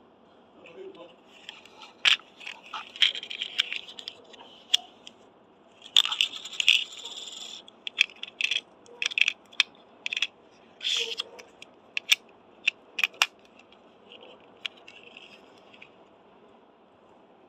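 Hard plastic clicks, rattles and scrapes of a toy disc shooter being handled and loaded with small plastic discs. Two clusters of rattling come about two and six seconds in, followed by a string of single sharp clicks.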